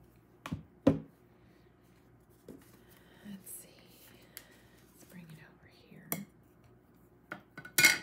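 Craft supplies being handled on a work desk: a handful of sharp taps and knocks as hard pieces are picked up and set down, with soft paper rustling and sliding in between. The loudest knocks fall about a second in and again just before the end.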